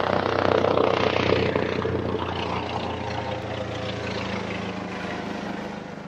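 Helicopter sound effect: turbine and rotor noise that is loudest in the first second or two, runs steadily, then begins to fade near the end.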